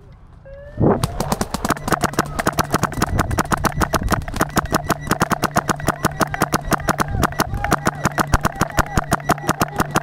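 Paintball marker firing a rapid, very even stream of shots, about ten a second, starting about a second in after a short rising tone, with a steady hum under the shots.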